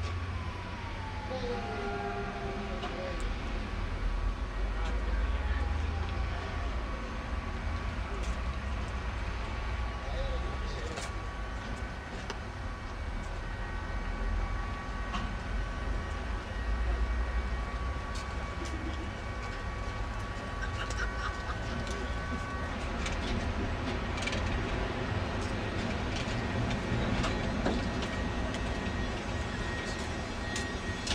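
Ganz articulated tram moving slowly along a depot track with a continuous low rumble. A whine falls in pitch in the first few seconds, and a steady whine holds for about ten seconds in the middle. Scattered clicks of wheels on the rails come in the second half.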